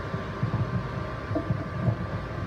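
Low, uneven rumbling room noise with a faint steady hum underneath, and a few faint murmurs about halfway through.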